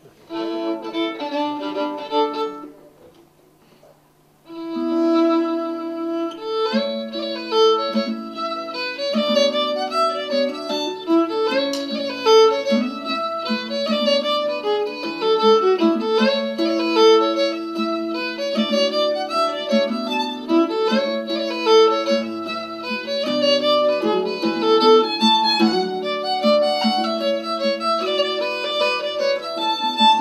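Fiddle playing Irish music live with acoustic guitar accompaniment. A short opening phrase breaks off about three seconds in, and after a pause of about a second and a half the tune resumes and carries on without a break.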